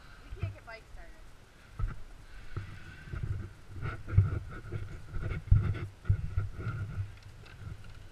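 Handling noise on a body-worn camera: irregular low thumps, knocks and rustling as the wearer moves, with a brief voice about half a second in and a faint steady high tone underneath.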